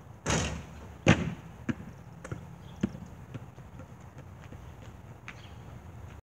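A basketball hitting and bouncing on an outdoor court: a loud hit about a third of a second in, a sharper bang about a second in, then fainter bounces about every half second.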